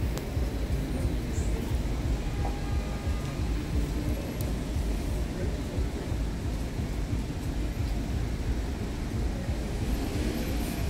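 Outdoor street ambience: a steady low rumble that fluctuates constantly, with a faint hiss above it.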